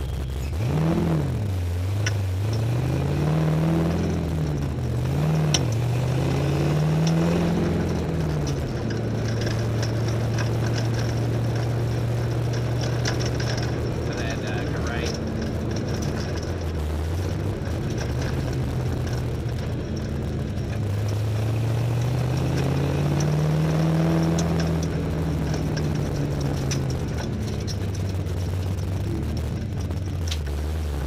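Race car engine heard from inside the cabin, pulling away through the gears. Its pitch climbs and drops sharply three times in the first eight seconds, then holds steady while cruising. It climbs again about two-thirds of the way through and eases off near the end.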